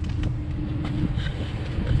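An engine idling nearby: a steady low rumble with a constant hum, and a few faint clicks over it.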